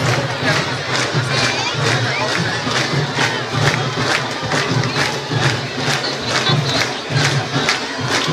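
Candombe drum ensemble of a comparsa playing a steady beat, with strokes at about two a second, over the noise of a crowd.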